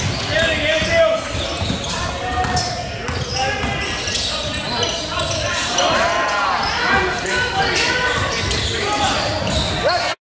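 Basketball game sounds on a hardwood gym court: a ball bouncing, sneaker squeaks (a cluster about six to seven seconds in) and indistinct shouting from players and the sideline, echoing in the large hall.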